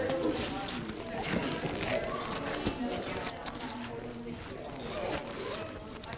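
Quiet background voices talking, with scattered light knocks and rustles from a cut fir tree being handled and set into a metal tree stand.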